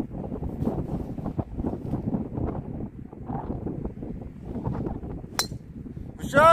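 Wind buffeting the microphone with a steady low rumble. About five and a half seconds in comes a single sharp click: a driver striking a golf ball off the tee.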